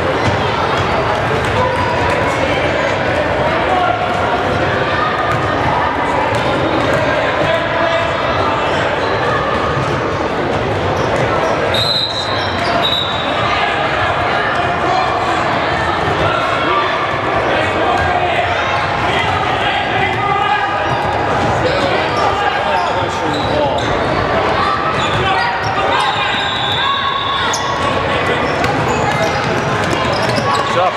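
A basketball bouncing on a hardwood gym court during a game, under steady echoing crowd chatter. A brief shrill tone comes about twelve seconds in and again near the end.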